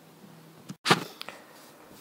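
Quiet room tone, broken a little under a second in by a momentary cut-out of the audio and then a single brief, sharp noise that fades quickly, followed by two faint clicks.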